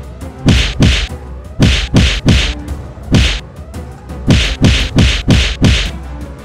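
A rapid series of punch sound effects, about eleven hits in quick groups of two and three: each a sharp smack with a deep boom that drops in pitch, over background music.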